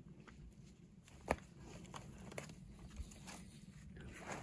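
Faint footsteps and scuffing on a dirt trail as a hiker steps over a fallen log, with one sharper click about a second in.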